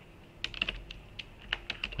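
Typing on a computer keyboard: a quick, uneven run of about ten key clicks beginning about half a second in.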